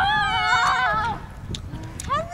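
A person's loud, high-pitched yell lasting about a second, rising at the start, then held with a wavering pitch before it breaks off; shorter, quieter cries follow near the end.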